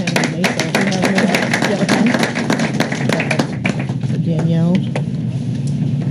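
Indistinct voices in a meeting room, with a quick run of sharp clicks or taps over the first three and a half seconds.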